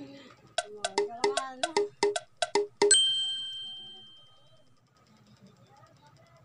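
A quick run of about a dozen sharp clicks, then a single bright bell-like ding about three seconds in that rings out and fades over a second and a half.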